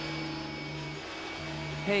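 Vacuum cleaner running with a steady hum and a thin high whine; the low hum drops out briefly about halfway through. A voice starts right at the end.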